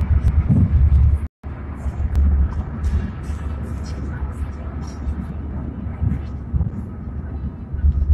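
Car cabin noise while driving: a steady low road and engine rumble heard through a phone's microphone. The sound cuts out completely for a moment about a second in.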